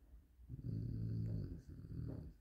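A man's drawn-out, low hummed "mmm" at a steady pitch, lasting about a second and a half from half a second in.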